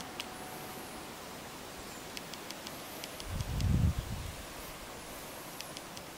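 Outdoor ambience: a steady rustling hiss with faint high chirps and scattered light ticks, and a short low rumble a little past halfway.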